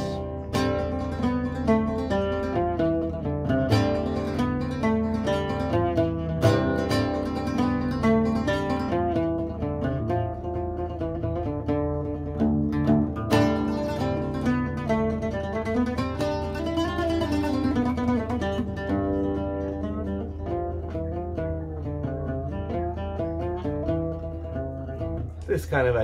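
Solo oud plucked with a plectrum, playing a quick Ottoman Turkish melody in seven-eight time, a dense run of plucked notes.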